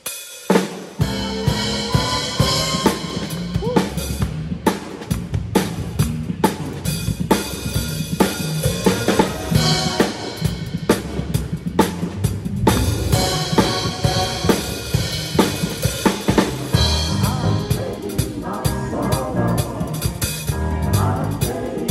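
Live drum kit playing a driving beat of kick drum, snare and cymbals, coming in about a second in, with the band's bass guitar and keyboard playing underneath.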